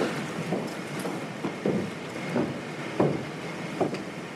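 Footsteps on a hard floor: a string of separate, unevenly spaced steps over a steady background hiss.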